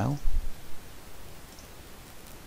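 Faint clicks of a computer mouse selecting and opening a file, over low room noise, after the tail of a man's word at the very start.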